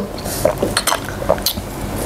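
Saucy chicken feet being picked by hand from a pile on a wooden board: a string of small clicks and taps.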